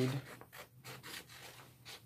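Scissors snipping through sublimation transfer paper, a few irregular cuts with the sheet rustling.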